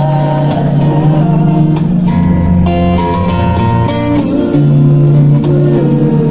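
Live amplified band music: acoustic guitar strummed, with male voices singing together through the PA.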